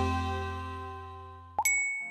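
Intro music's last plucked chord fading out, then a single bright ding about one and a half seconds in, ringing briefly: a chime marking the end of the title sequence.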